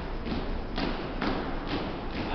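Footsteps of a platoon marching in step on a hardwood gym floor: a steady beat of unison stamps, about two a second.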